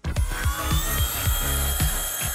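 Background music with a steady beat, over a thin high-pitched whine from the hoverboard's aluminium magnet wheel spinning on a dynamic balancing rig.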